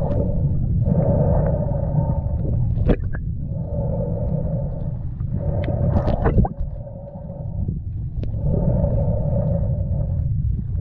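Underwater sound picked up by a camera moving through shallow seawater: a constant low rumble of water movement, with a hollow droning tone that comes and goes every couple of seconds, and a few sharp clicks.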